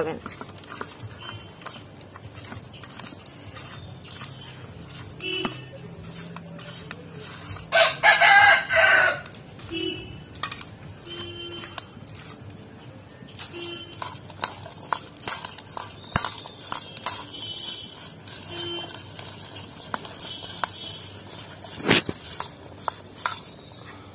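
A rooster crows once, about eight seconds in, and is the loudest sound. Short calls from chickens come now and then, and from about halfway on there are small clicks and squelches of a hand mixing fish pieces in a steel bowl.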